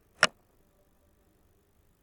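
A single sharp click of a computer mouse button about a quarter second in, then quiet room hiss.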